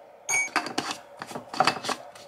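A metal teaspoon clinks once against the glass instant-coffee jar, with a brief ring. Then the jar's screw-top lid is put back on and twisted closed, giving a quick run of scraping clicks.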